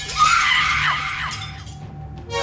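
Cartoon sound effect of a glass panel shattering with a sudden crash about a quarter-second in, along with a woman's scream that fades over about a second, over background music.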